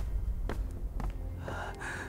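A man gasping in pain twice near the end, two short breathy intakes of air, over a low background rumble.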